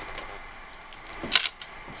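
A few small, sharp clicks of memory wire and beads being handled: one about a second in, a louder pair just after, and another near the end.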